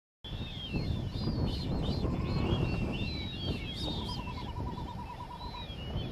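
Many short chirping bird calls over a steady low rumble, starting abruptly just after the start, with a rapid buzzy trill joining in about halfway through.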